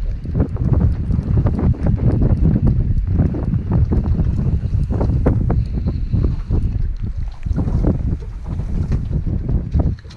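Strong wind buffeting an action camera's microphone: a dense low rumble broken by many short crackles.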